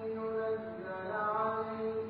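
A man's voice chanting Quranic recitation, drawing out long held notes with slow pitch bends.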